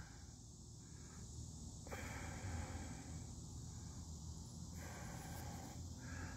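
Quiet outdoor ambience with soft breathing close to the microphone, a couple of breaths of about a second each, over a steady faint high hiss.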